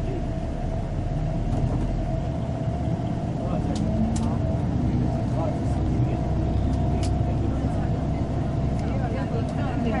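Engine and road noise heard from inside a moving tour bus: a steady low rumble with a faint steady whine and a few brief clicks near the middle.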